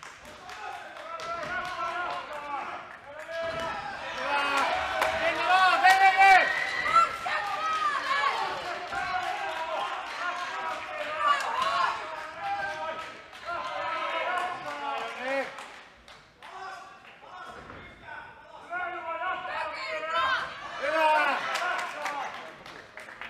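Voices shouting during a kickboxing bout, most likely cornermen and spectators, with sharp thuds of gloves and kicks landing between the shouts. The shouting is loudest a few seconds in and near the end, with a brief lull in between.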